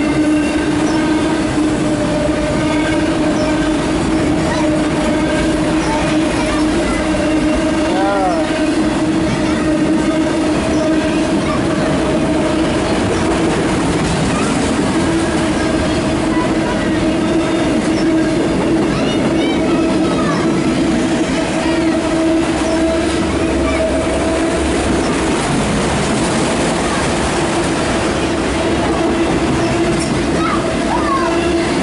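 Loaded autorack freight cars rolling past close by: a steady, loud rumble of wheels on rail, with a steady tone held under it.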